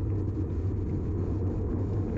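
Steady low rumble of wind and road noise on a bike-mounted camera riding at about 24 mph.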